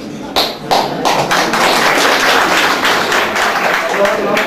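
Audience applauding: a few sharp claps about half a second in, then steady clapping from many hands.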